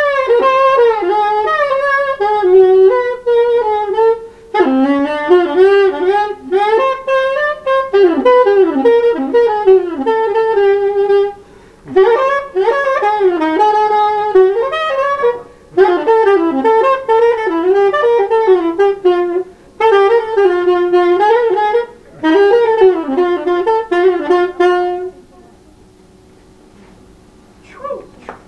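Solo saxophone playing free-improvised jazz lines, with quick runs and bending pitches, in phrases broken by short breaths. It stops about a second before the end.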